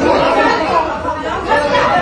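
Several people talking and calling out over one another at once in a TV debate studio, as a scuffle breaks out on the set.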